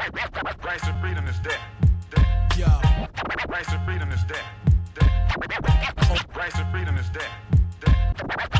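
Hip hop track playing with turntable scratching over a steady beat with heavy bass.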